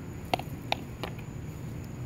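Two faint clicks as hard plastic toy horse figurines are set down on a concrete pool deck, over a low, steady background rumble.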